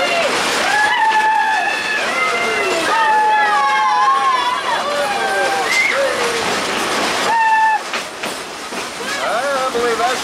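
Train passengers screaming in a tunnel: several long, wavering screams in turn and overlapping, over the noise of the moving train.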